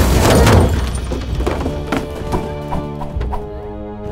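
A cartoon crash sound effect, the van slamming onto rock, dies away over the first half second, followed by background music with held notes and light clicking percussion about three times a second.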